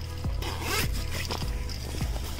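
A Point Zero winter jacket is handled on the rack: its front storm flap is pulled open, with the zipper rasping and the shell fabric rustling, loudest about half a second in.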